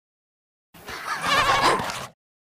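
A creature's vocal call with a wavering, wobbling pitch, starting suddenly out of silence about three-quarters of a second in and lasting about a second and a half.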